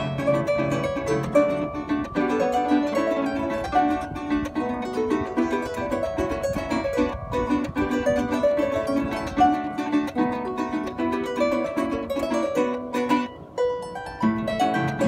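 Arpa llanera (Llanos folk harp) playing a fast instrumental with quick plucked melody and bass runs, accompanied by a strummed cuatro. There is a brief dip just before the end.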